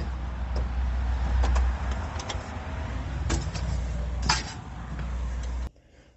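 Steady low wind rumble on the microphone, with a few scattered knocks and clicks from footsteps on wooden porch steps and the handling of an aluminium storm door. It cuts off suddenly near the end.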